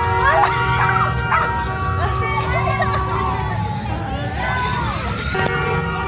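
A dog barking in short bursts, over steady music with held notes and the voices of a street crowd.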